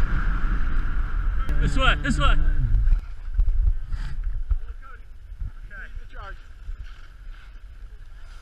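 Wind rushing over an action camera's microphone and skis running on packed snow, dropping away about three seconds in as the skier slows and stops. A brief voice calls out around two seconds in, with fainter voices later.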